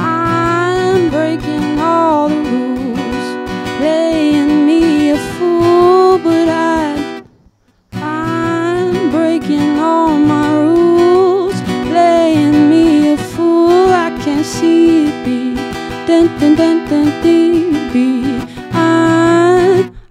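Acoustic guitar strummed with a woman singing a melody over it. The playing breaks off briefly about seven seconds in, then starts again and runs on until it stops at the end.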